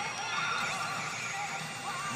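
Pachinko machine sound effects for a bonus announcement, a horse whinny among them, over a steady background din.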